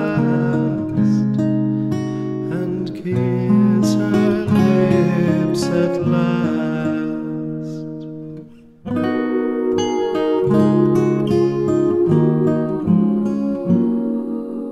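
Acoustic guitar playing an instrumental passage between verses of a slow song, its notes ringing on. The playing dies away briefly about eight seconds in, then starts again.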